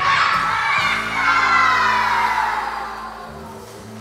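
Children's choir voices together ending a song loudly, the sound sliding down in pitch and fading about three seconds in, over a steady low held note.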